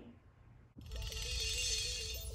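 Near silence, then background music begins just under a second in: a simple melody stepping back and forth between two notes over a low bass, with a bright shimmering wash on top.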